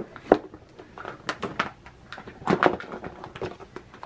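A cardboard makeup gift box being opened and its insert tray handled: irregular light taps, scrapes and rustles of card.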